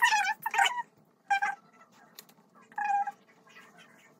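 Three short high-pitched cries, a longer one at the start and two briefer ones later, from an animal or voice that cannot be seen.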